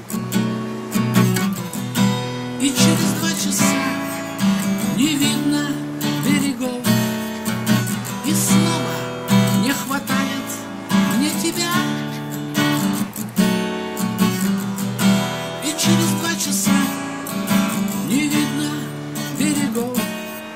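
Acoustic guitar strummed in a steady rhythm, accompanying a man singing a sailors' song.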